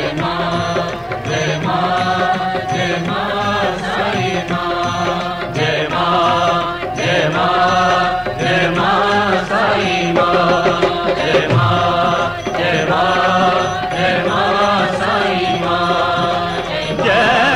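Hindi devotional bhajan to the goddess Vaishno Devi, sung with instrumental accompaniment.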